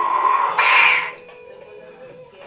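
A man's loud, high-pitched yell, held on one note and cut off about a second in.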